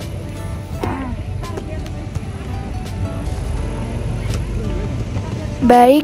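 Soft background music over a steady low rumble of a hard-shell suitcase's wheels rolling over paving stones.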